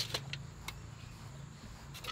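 A steady low mechanical hum, with a few faint clicks in the first second.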